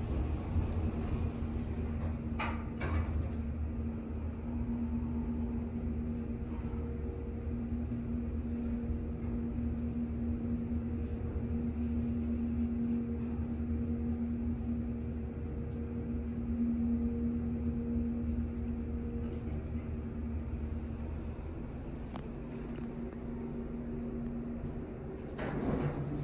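Schindler hydraulic elevator's pump motor humming steadily over a low rumble as the car rises, heard from inside the cab. The doors slide shut with a few knocks early on. The hum eases and dies away near the end as the car slows and levels at the floor.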